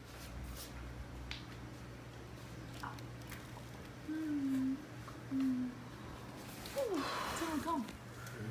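A person's voice making two short hummed "mm" sounds a little past halfway, then a brief sliding exclamation with a breathy rush near the end, over a steady low hum.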